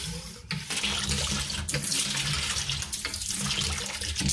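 Water streaming from the reducer-narrowed spout of a homemade PVC hand pump and splashing into a bucket of water as the plunger is worked. The flow sets in about a second in and then runs as a steady, splashy hiss.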